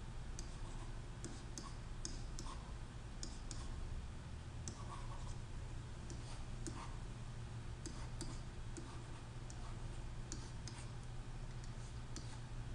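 Light, irregular clicks and taps of a stylus writing on a pen tablet, over a steady low electrical hum.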